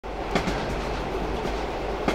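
Passenger train running along the track, heard from inside the carriage: a steady rumble and hiss with a few sharp clicks from the wheels.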